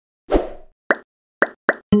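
Logo-intro sound effects: a low thump, then three short pops in quick succession, with a ringing musical chord starting right at the end.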